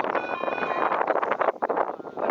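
Wind buffeting the microphone in gusts. Near the start, a steady electronic beep of several tones lasts just under a second, typical of the audible signal an F3F timing system gives as the glider crosses a base.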